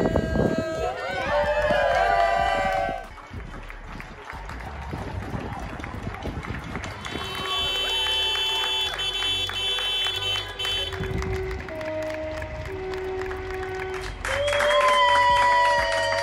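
Background music over a crowd: excited voices and shouts for the first few seconds, then many people clapping and cheering, with voices loud again near the end.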